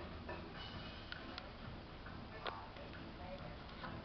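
A few sharp clicks, irregularly spaced about a second apart, over a faint steady murmur of background voices and music.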